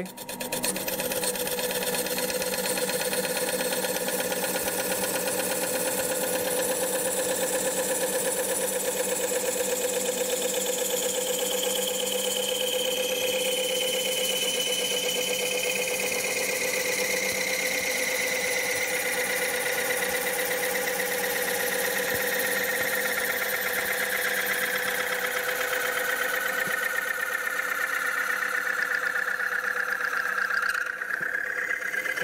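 McNaughton Center Saver curved coring blade cutting a kerf into a spinning wooden bowl blank on a lathe. A steady cutting noise runs over the lathe's running, and a higher tone in it slowly falls in pitch through the second half as the cut goes deeper.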